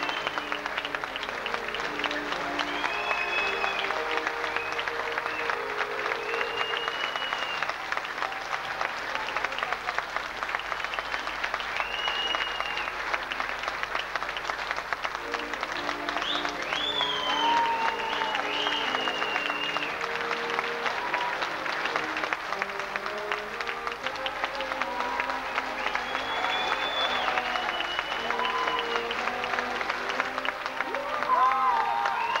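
Audience applauding steadily while a live band plays instrumental music beneath the clapping.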